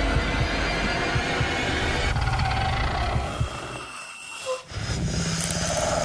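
Suspense film trailer soundtrack: a deep, dense, ominous score and sound design, heavy in the low end. It cuts almost to silence suddenly about four seconds in, then comes back under a second later.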